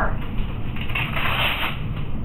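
Rustling and rubbing of a back brace's fabric straps and padded panels as they are handled and lifted, loudest in the second half.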